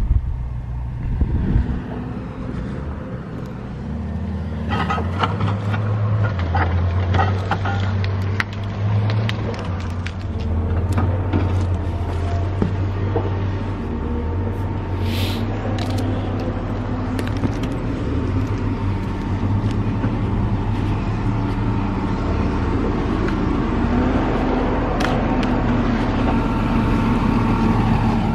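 Heavy logging machinery's diesel engine running steadily, its pitch stepping up and down with load, with scattered metallic clanks and a brief high squeal about fifteen seconds in.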